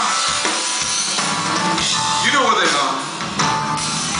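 Live rock band playing: electric guitar over drums and bass, with sliding pitch glides in the guitar line about halfway through.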